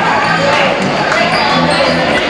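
Basketball bouncing on a hardwood gym floor amid players' and spectators' voices in a large gym, with low music notes starting about a quarter second in.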